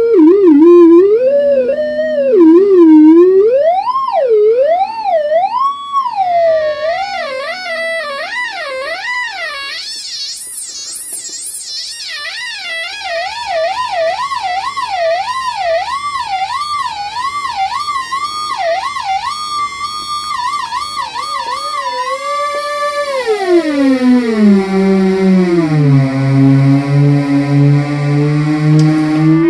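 Homemade theremin-style synthesizer built on an Axoloti board, its pitch set by a hand's distance over Sharp infrared distance sensors. It plays a wavering electronic tone with harmonics that wobbles up and down and glides between notes. A high whistling tone wobbles above it about ten seconds in; near the end the pitch slides down and a lower tone moving in steps joins beneath.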